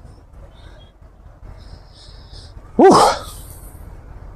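A man's loud, breathy "whew" exhaled about three seconds in, its pitch falling, over a faint steady street background.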